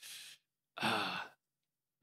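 A man's short breath in, then a short, breathy sigh a moment later, faintly voiced.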